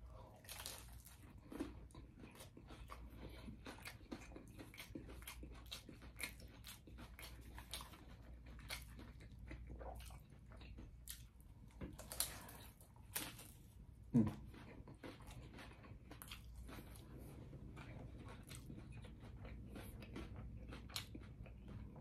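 A man biting into and chewing a folded smash burger taco in a tortilla shell: quiet crunches and small chewing clicks, with one brief louder sound about fourteen seconds in.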